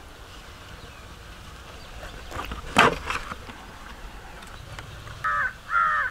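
Two short crow caws near the end over quiet outdoor background, with a single sharp click about halfway through.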